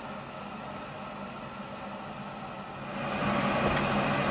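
Milling machine running with a steady hum that grows louder and brighter about three seconds in.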